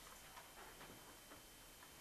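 Near silence: room tone with a faint steady high hum.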